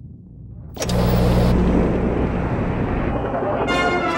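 An old television set switched on with its dial: a sudden burst of loud static and hum about a second in, settling into a noisy din, and a brass band starting to play near the end.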